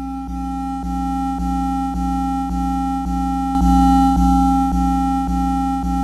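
Korg Volca Drum playing one melodic synth part from a running sequence: a sustained pitched note retriggered about twice a second, its timbre shaped by the wave-folding and overdrive settings as they are adjusted. The tone turns brighter about three and a half seconds in, then settles back.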